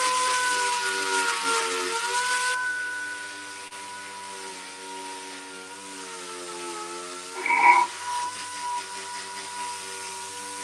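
Random-orbital sander running on a steel motorcycle fuel tank: a steady whine with a lower hum under it, and a loud hissing scrape for the first couple of seconds that then drops away. A short, louder burst comes about three-quarters of the way through.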